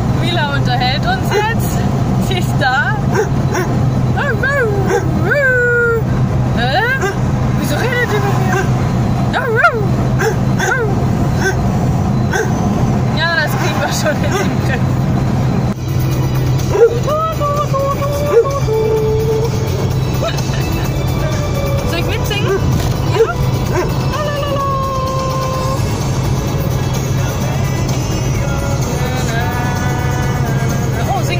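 A Dalmatian in the back of a moving car whining and yipping in short, high cries that rise and fall, later in longer drawn-out tones, over the car's steady engine and road hum.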